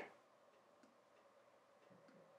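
Near silence: room tone with a faint steady hum and one faint tick a little under a second in.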